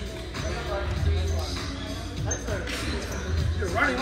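A ball bouncing on a hardwood gym floor, several irregular thuds ringing in a large echoing hall, with voices near the end.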